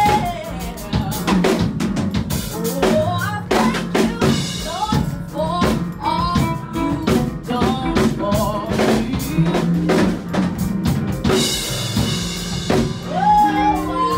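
A woman sings into a handheld microphone over a steady drum beat, her melody coming in phrases between the drum hits.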